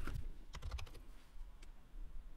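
Faint computer keyboard typing: a few scattered keystrokes as a short text is entered.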